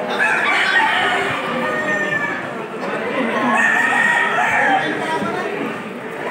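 Gamecocks crowing over a crowd's chatter, with long drawn-out crows in the first second or two and again near the middle.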